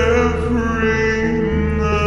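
Slowed-down, pitched-down (anti-nightcore) song: a long, deep held vocal note with a slight wobble over a steady low bass.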